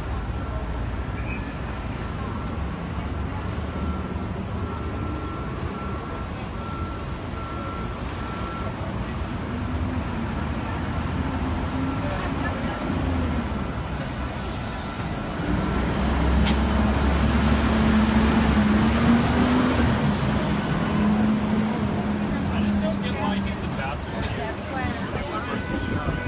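Street traffic noise: a steady low rumble of passing vehicles, with a large engine running close by that gets louder about two-thirds of the way in.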